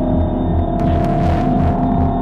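Droning electronic noise music: a steady hum under a low pulse that throbs about three times a second, with a sustained tone that slowly edges up in pitch and washes of hiss that swell and fade.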